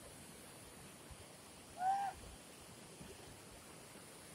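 Muddy floodwater of a swollen stream rushing steadily. About two seconds in, one short rising-then-falling call stands out, louder than the water.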